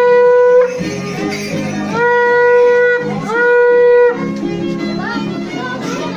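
A curved animal-horn trumpet blown in long notes held on one pitch. One blast cuts off about half a second in, two more of about a second each follow, and short rising toots come near the end. Music with steady lower notes plays underneath.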